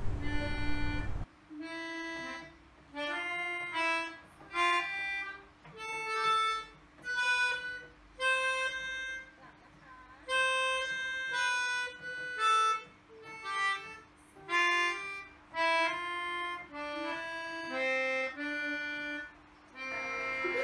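Melodica (keyboard harmonica) played slowly in a simple tune, one held note at a time with short gaps between the notes, starting about a second in.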